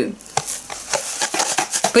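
Cardboard box of washing powder being handled and tilted, giving a quick, irregular run of soft clicks and rustles.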